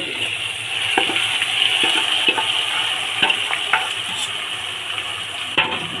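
A hot pot sizzling steadily as spiced meat is scraped into it from a steel pan and stirred into the rice with a metal spoon. A few light knocks of the spoon against the pans come through the sizzle.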